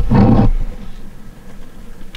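A short growl, about half a second long, right at the start, followed by only a faint low hiss.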